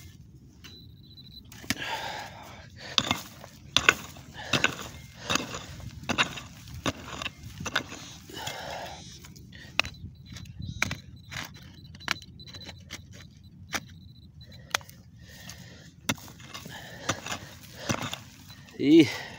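A hand pick with a metal head chopping into dry, hard-packed soil in a run of blows, roughly one a second, with clods and grit crumbling and scraping between strikes as a detected target is dug out.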